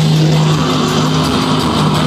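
Live metal band playing loudly: distorted electric guitars holding low notes over a dense wash of drums and cymbals.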